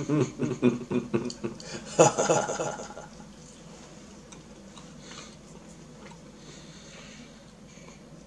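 A man's appreciative "mm" sounds and chuckling while eating, loudest about two seconds in and dying away by three seconds. After that there is quiet chewing with a few faint mouth clicks.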